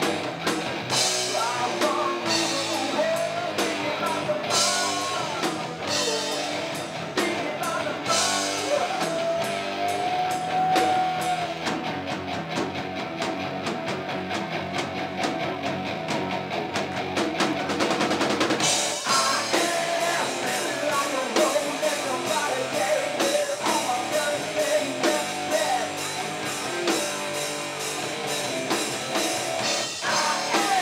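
Live rock band playing loud: electric guitars, a drum kit and a male lead singer. Midway the cymbals drop out for several seconds, then the full band crashes back in.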